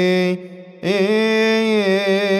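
A male voice singing a long, drawn-out line of Coptic psalm chant, wavering in pitch and then holding a steady note. It breaks off for a breath just before one second in, then comes back on a slight upward slide.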